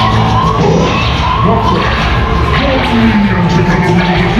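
Loud, continuous dark-ride soundtrack music, with voice-like sounds mixed in and a low pitched line gliding downward late on.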